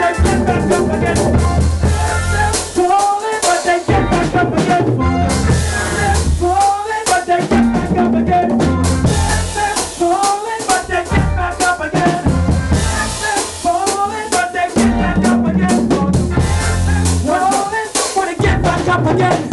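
Live band playing an up-tempo gospel soca tune: a drum kit and bass carry the groove under a melody line, in phrases of about four seconds.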